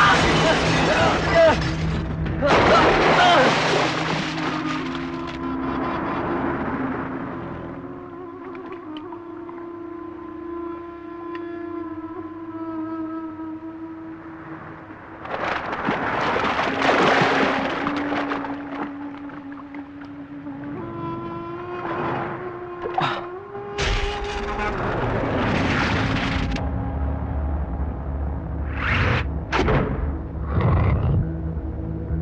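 Film action-scene soundtrack: sustained tense background music with loud, noisy bursts of crash and vehicle sound effects, the biggest near the start and about halfway through.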